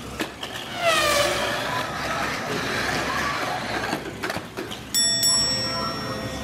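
Tamiya Mini 4WD car running on a plastic course, its small electric motor whining and dipping and rising in pitch through the corners, with light ticking as it runs over the track sections.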